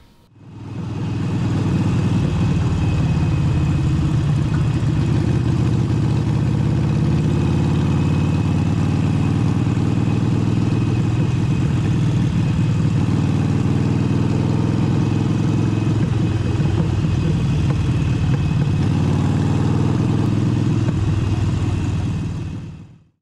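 Motorcycle engine running steadily at cruising speed, fading in over the first two seconds and beginning to fade out near the end.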